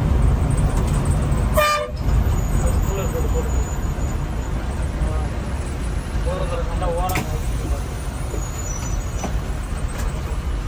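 Steady engine and road rumble heard from the front cabin of a moving SETC bus, with a short horn toot about two seconds in.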